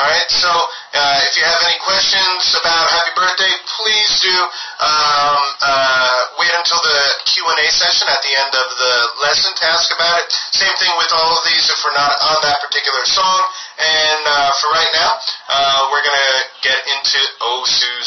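Music with a man's voice singing, the sound loud and harsh, as if heavily compressed.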